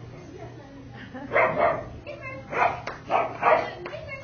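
A dog barking several times in quick succession, starting about a second in, over low background chatter.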